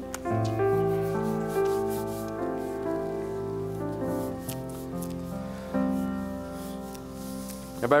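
A keyboard plays soft, slow, sustained chords that change every second or so. Faint scratching and rustling of pens and paper runs underneath.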